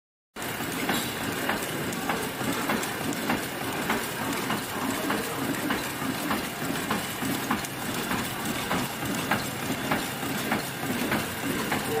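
High-speed tea bag packing machine with tag attacher running: a steady mechanical clatter with a sharp click repeating evenly a little under twice a second.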